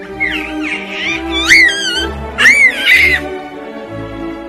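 Background music with about three high-pitched squealing calls over it, each bending up and down in pitch; the loudest come in the second half.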